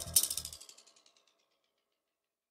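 The ending of a psytrance track: a last electronic hit trails off in a fast run of repeating echo clicks that fade out within about a second, leaving silence.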